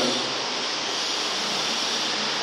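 Steady, even hiss of background noise with no distinct events in it.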